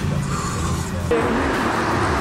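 Road and engine rumble inside a small Car2Go Smart Fortwo while it is driving. About a second in, this cuts abruptly to a steadier hiss of street traffic noise.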